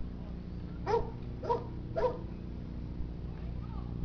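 A dog barking three times, about half a second apart, over a steady low hum.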